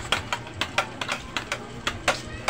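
A person chewing chicken with mouth open, wet lip smacks and mouth clicks coming in quick irregular succession, about four a second.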